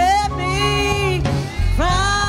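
Gospel singing with instrumental accompaniment: a single voice holding long, wavering notes over a steady low bass and band.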